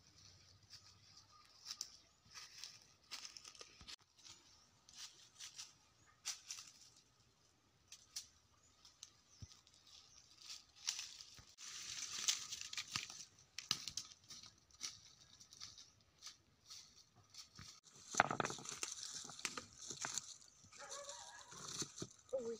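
Footsteps and brushing through dry fallen leaves and twigs: faint, irregular crunching and rustling, heaviest near the end.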